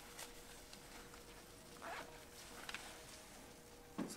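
Quiet room tone with a faint steady hum, and soft brief rustles of a nylon down puffer jacket moving on its wearer.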